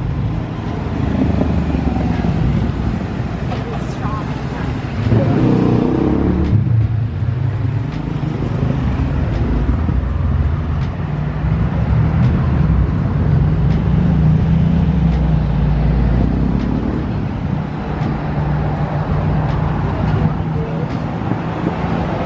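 Street traffic: car engines running and cars passing close by in a steady low rumble that swells midway. Voices of people talking nearby cut in about five seconds in.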